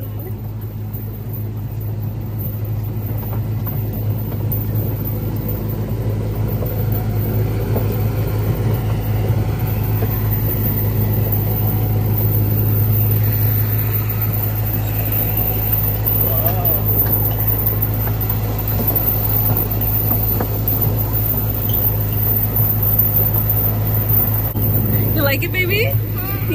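Steady low engine hum of the vehicle towing a barrel train, with the rumble of the barrel cars rolling over a dirt path. It grows a little louder over the first few seconds.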